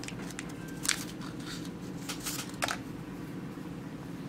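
A screen-cleaning wet-wipe packet being torn open and handled: a few short, crisp crinkles and rips, over a steady low hum.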